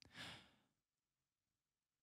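Near silence: room tone, with one faint, short breath into a close studio microphone about a quarter second in.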